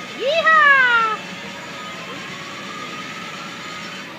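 A shouted "yee" whoop, its pitch jumping up then sliding down over about a second, cheering on a mechanical-bull rider. After it, only a steady background hum.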